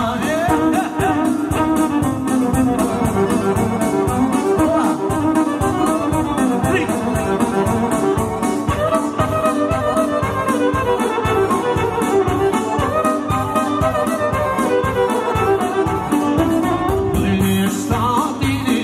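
Live Albanian folk wedding music, mostly an instrumental break: electronic keyboard with an accordion-like lead and violin over a steady, quick drum beat.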